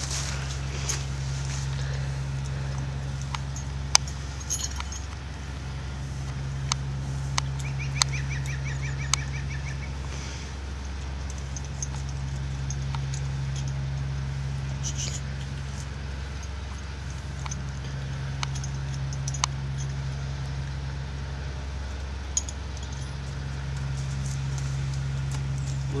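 A steady low hum that swells and fades every few seconds, with scattered sharp metallic clicks from the horse's halter fittings as they are handled. A short, high, evenly repeated trill comes about eight seconds in.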